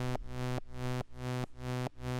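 A static, single-note eurorack synthesizer tone run through a Cosmotronic Messor compressor. Its level is pulled down sharply several times a second and swells back after each dip, the pumping of envelope-driven, sidechain-style compression.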